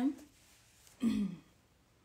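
A woman clears her throat once, briefly, about a second in.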